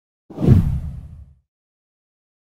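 A deep whoosh sound effect opening an animated channel intro, starting suddenly about a third of a second in and fading out over about a second.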